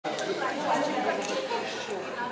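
Indistinct chatter of several people talking at once in a large room.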